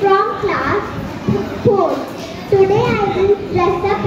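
A young girl speaking into a handheld microphone, her high voice rising and falling in a recited, sing-song way.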